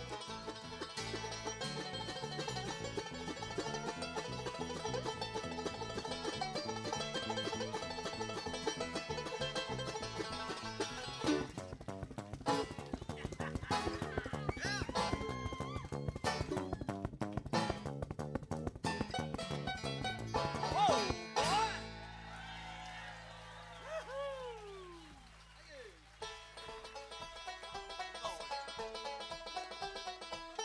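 Live bluegrass band playing a fast instrumental, with driving banjo picking over acoustic guitar and upright bass. About 21 seconds in the full band drops out, leaving a held low note and a few falling, sliding notes, and the playing builds again near the end.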